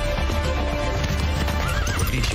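A galloping horse in a film soundtrack: steady hoofbeats under dramatic background music, with a short whinny near the end.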